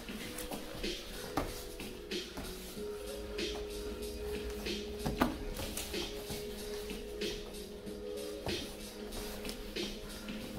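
Background music with long held notes, over the shuffling, scuffing and knocks of grapplers moving on foam mats, with a sharper knock about five seconds in.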